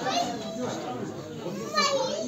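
Chatter of several voices, children among them, with a high-pitched child's voice rising near the end.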